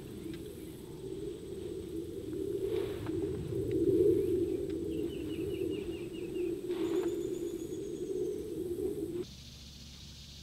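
A low, wavering rumble that swells about four seconds in and cuts off abruptly near the end, with a bird's short trill of quick descending notes about halfway through and faint high chirps just after.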